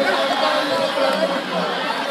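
A large crowd's mingled voices, many people talking at once in a steady chatter.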